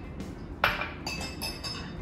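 Glass clinking against a glass measuring jug as a small glass dish is emptied into it and a utensil starts stirring: one sharp clink a little over half a second in, then a few lighter clinks.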